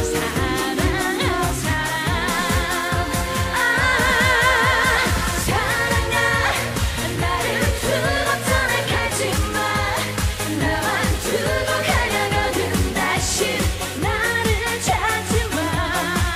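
Live Korean trot song: a woman singing with strong vibrato over a band with a steady dance beat.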